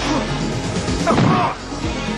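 Film fight soundtrack: heavy blows and crashing impacts over a dramatic music score.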